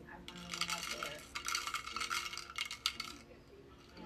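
Small loose Lego pieces rattling and clicking against a clear plastic snow-globe dome. The dense rattle lasts about three seconds and then stops.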